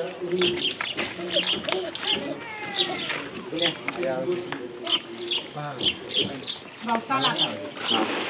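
Birds chirping, short high chirps every half second or so, over people talking in the background.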